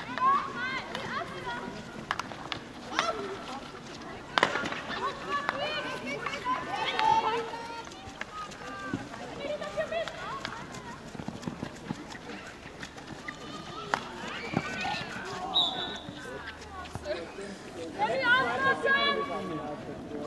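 Indistinct shouts and calls of players and spectators across a field hockey pitch, busiest near the end, with a few sharp clicks of hockey sticks striking the ball.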